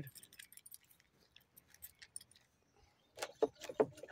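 Faint, scattered light clicks and clinks, then a person's voice near the end saying "Oh".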